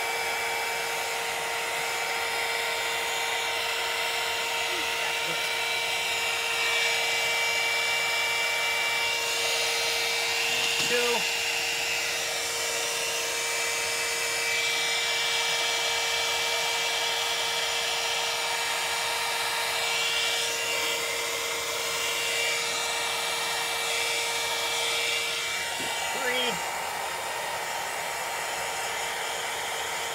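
Electric heat gun running steadily, its fan blowing with a constant whine as it heats heat-shrink tubing over a battery cell. About 26 seconds in, its whine drops out and it gets slightly quieter.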